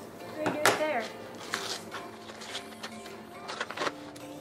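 A brief falling voice sound about half a second in. After it come a few scattered sharp clicks and rustles as a paper-wrapped parcel is cut and pulled open with scissors.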